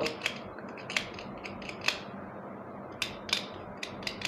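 A cutter blade scraping the metal terminal tabs of a new rechargeable battery, a handful of short, quiet scraping strokes at irregular intervals, cleaning a glue-like coating off the tabs.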